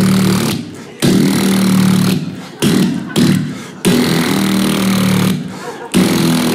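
A man imitating a rotary telephone dial with his voice, close on a microphone: about six buzzing, rattling whirrs in a row, most about a second long, separated by short gaps, like the dial spinning back after each digit.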